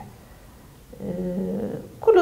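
A brief pause, then a person's voice holding a drawn-out, steady-pitched vocal sound for about a second, like a held hesitation vowel in conversation.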